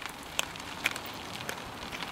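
A mountain bike rolling over a dirt trail: a steady rustle of tyre noise with a few sharp, irregular clicks and crackles.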